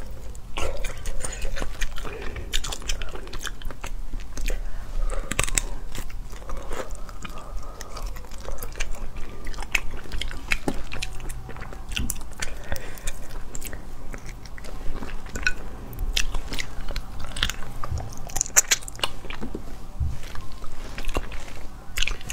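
Close-miked eating: biting into, chewing and crunching pieces of a braised fish head, with many small irregular clicks and crackles.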